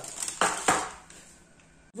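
Sheet of baking paper rustling briefly as it is handled, two quick crinkles about half a second in.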